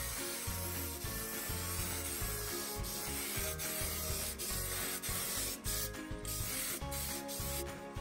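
Aerosol can of SEM vinyl and leather paint hissing steadily as it is sprayed over a leather seat cover in sweeping passes.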